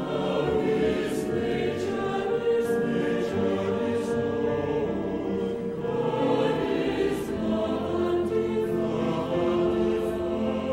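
A choir singing a slow choral song, moving through held chords with the words' consonants audible.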